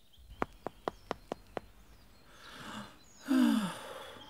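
Six quick, light clicks in the first second and a half, then a breathy sigh about three seconds in that falls in pitch. The sigh is the loudest sound.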